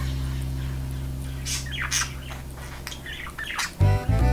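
Budgerigar giving several short chirps in the second half, over a low held note of background music that slowly fades.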